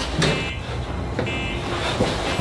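A steady low rumbling noise, with faint short electronic tones over it twice.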